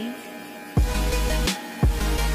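Background pop music: a quiet, sparse passage, then a heavy bass beat comes back in about three-quarters of a second in.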